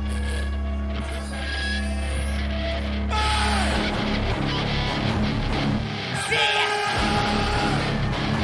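Loud live rap-concert music over a festival PA. A steady deep bass note holds, then stops a little under four seconds in as the music changes.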